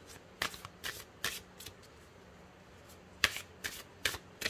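A tarot deck being shuffled: short card snaps, several in the first two seconds, a pause, then a sharper, louder snap a little past three seconds in followed by two more.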